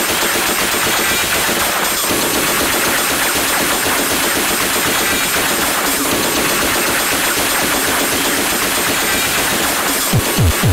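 Early hardcore track in a breakdown: the kick drum drops out and a loud, dense rapid-fire rattle of distorted noise fills the stretch.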